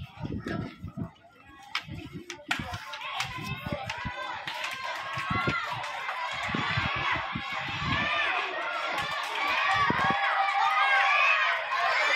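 A crowd of spectators, many of them children, shouting and cheering runners on in a sprint. Many high voices overlap. The cheering starts suddenly after a sharp crack about two and a half seconds in, and grows louder toward the end.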